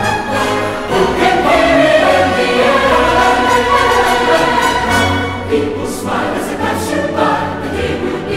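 Background music with a choir singing.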